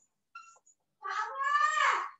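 A man's voice holding one long drawn-out syllable that starts about halfway through and falls in pitch at the end, after a short pause.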